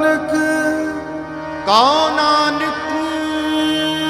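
Harmonium holding a steady chord between sung lines of a Sikh kirtan shabad. About two seconds in, a singer's voice slides up in pitch to meet the held harmonium note.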